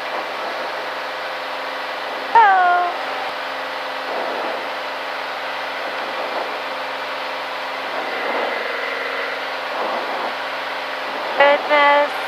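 Columbia 350's six-cylinder Continental engine and propeller at takeoff power in the climb-out, a steady drone of even tones. A short voice exclamation falling in pitch cuts in about two seconds in, and talk starts near the end.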